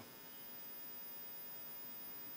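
Faint steady electrical hum with no other sound: room tone.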